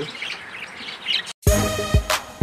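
Budgerigars chirping in their cage, cut off about a second and a half in by music that starts with a deep thump.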